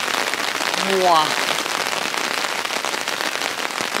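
Rain falling steadily on the tent fabric, heard from inside the tent as an even hiss. A brief voice sound about a second in.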